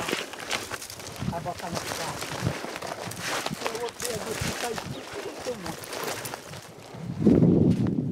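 Footsteps crunching and swishing through tall dry grass and brush, with the stalks rustling against legs. A louder low rush comes near the end.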